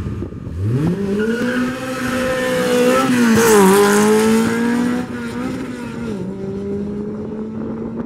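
A VW Golf IV TDI turbo-diesel and a Škoda 100 launching from a drag-race start and accelerating hard side by side. The engine note climbs about half a second in, is loudest in the middle with a brief dip in pitch, then steps down and carries on more quietly as the cars run away down the strip.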